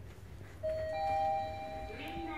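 Mitsubishi Electric NexCube elevator arrival chime: two ringing notes, a lower one and then a higher one a moment later, sounding together for about a second. It signals that the car has arrived for the up call.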